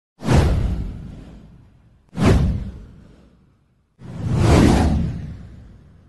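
Three whoosh sound effects about two seconds apart: the first two hit suddenly and fade away over about a second and a half, and the third swells up before fading.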